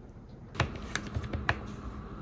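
Typing on a tablet's keyboard case: a handful of separate key clicks starting about half a second in, then a light hum.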